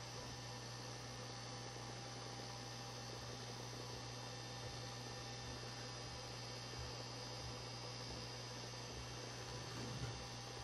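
Steady low electrical hum with a faint even hiss, the recording's background noise; no other sound stands out.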